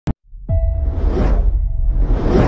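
Cinematic logo-intro sound effects over a music bed. A short click, then about half a second in a deep hit with a sustained low rumble and a held tone, followed by a whoosh that swells and fades.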